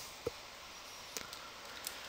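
Faint room hiss with a few soft computer-mouse clicks, one about a second in and another near the end.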